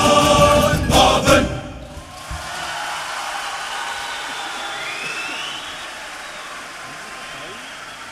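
A fez-wearing male Cape Malay choir with a guitar string band holds the last chord of a comic song (moppie), with final strummed accents about a second in, and stops abruptly about a second and a half in. Audience applause and cheering follow, with a short rising whistle near the middle.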